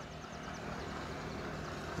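Steady, even road and engine noise of a vehicle driving along a highway.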